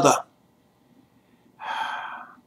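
A man's sentence trails off, and after about a second's pause he takes a quick, audible breath near the end, a gasp-like intake between phrases.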